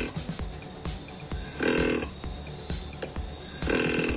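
Short, low grunts imitating a buck, made to call a whitetail deer, repeated about every two seconds, over background music.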